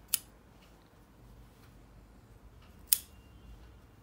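Scissors snipping through yarn strands: two sharp cuts, one just after the start and one about three seconds in, with a few faint clicks of the blades between.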